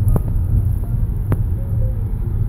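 Steady low rumble of a car driving, heard from inside the cabin, with two sharp clicks: one just after the start and one a little over a second later.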